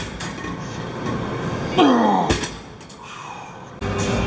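A man groaning with strain during a heavy set of leg extensions, his voice falling steeply in pitch about two seconds in, followed shortly by a sharp knock.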